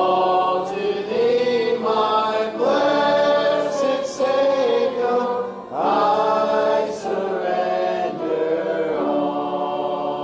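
A church congregation singing a hymn together in long held notes, with a short break between phrases just before six seconds in.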